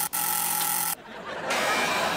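Apartment building intercom door buzzer giving a steady electric buzz, broken by a short gap just after the start and cutting off about a second in. A softer, noisy wash of sound follows.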